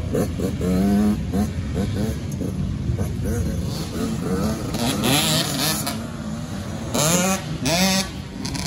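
A Yamaha YZ85's two-stroke single-cylinder engine revving up and down as the bike is ridden over a dirt track, its pitch rising and dropping repeatedly through throttle and gear changes, with strong climbing revs about a second in and again about seven seconds in.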